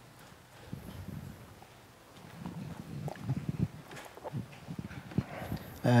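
Footsteps on a hard floor: a run of irregular low knocks starting about two seconds in, as a person walks up to the front of a lecture hall. A man's voice begins right at the end.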